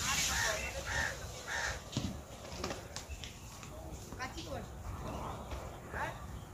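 Bird calls outdoors: a run of short, evenly repeated calls in the first two seconds, then fewer scattered ones, over distant voices.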